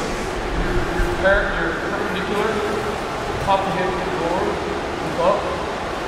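Brief, indistinct voices in a large, reverberant hall over a steady background hum.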